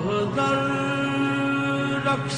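Qawwali music: a long held sung note that steps to a new pitch about a third of a second in, then holds steady.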